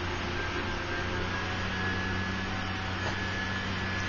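Steady low background hum with a faint hiss, unchanging throughout: room tone.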